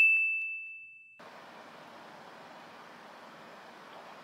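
A single high bell-like ding, an editing sound effect on a title card, ringing out and fading until it stops about a second in. Faint steady room hiss follows.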